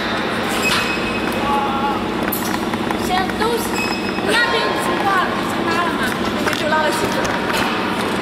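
Steel trampoline coil springs clinking now and then as they are hooked onto a metal frame, over a steady low hum and background voices.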